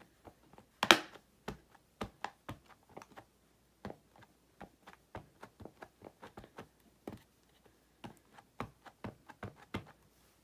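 A plastic-cased ink pad dabbed repeatedly onto clear rubber-like stamps, giving a run of light taps about two to three a second, the loudest about a second in.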